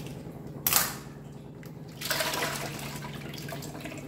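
Milk pouring from a plastic milk packet into a large metal pot of milk: a splashing pour starts about halfway through and slowly tapers off. A short sharp noise comes just before it, less than a second in.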